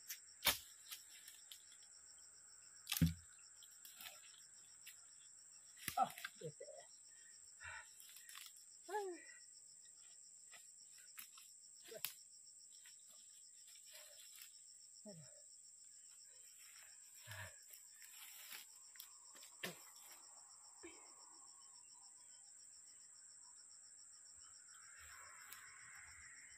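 Steady high-pitched drone of insects, with scattered knocks and thuds of cut log rounds and branches being handled.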